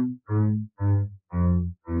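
Double bass played with a bow: a run of short, separate notes, about two a second, with brief gaps between them, played slowly.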